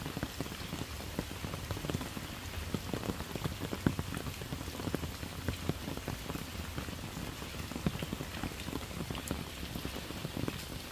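Steady rain falling on wet pavement and a shallow puddle, with many separate drops tapping through a continuous patter.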